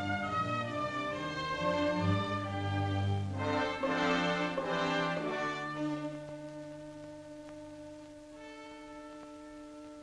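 Orchestral background music led by strings, swelling about four seconds in, then settling into long held chords that fade.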